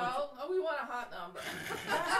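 A man talking, with chuckling laughter.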